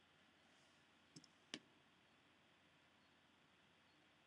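Near silence with a few clicks from a computer mouse: two faint ones a little over a second in, then a sharper one.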